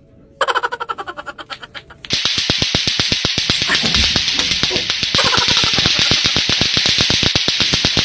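Lato-lato clacker balls clacking in a fast, even rhythm. The clicks start about half a second in and get louder and denser, with a hiss behind them, from about two seconds in.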